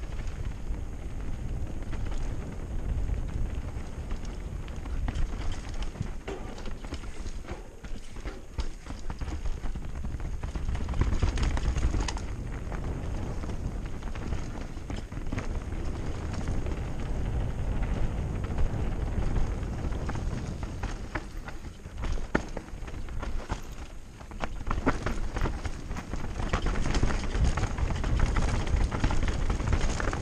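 Mountain bike descending a dirt forest singletrack: tyres rolling over dirt and roots with irregular clicks and knocks of chain slap and rattling parts, over a steady low rumble of wind on the camera's microphone. The knocking gets busier and louder near the end.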